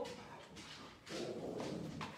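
A dog making a low, drawn-out grumbling sound that starts about a second in and carries on to the end.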